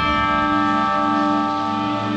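A concert band holds a chord, with a struck bell tone sounding just before it and ringing on through it.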